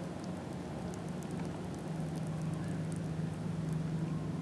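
A steady low motor hum with faint scattered ticks and patter over it.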